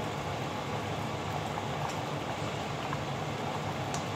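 A stainless-steel pot of pork, cabbage and carrot stew simmering on an electric stovetop, a steady bubbling.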